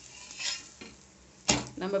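A steel spatula scrapes under an adai on an iron tawa, with one sharp metal-on-pan clank about one and a half seconds in, over a faint sizzle of the frying batter.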